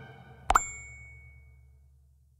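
A subscribe-button animation sound effect: one sudden pop about half a second in, with a bright ringing ding that fades over about a second. The last of a song's music fades out before it.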